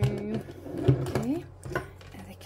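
Clicks and light knocks from a nail drill's cables, plug and plastic parts being handled, with a drawn-out vocal sound at the start and a short rising vocal sound about a second in.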